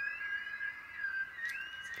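A high, thin whistling tone that wavers and glides in pitch, rising near the start and again about one and a half seconds in.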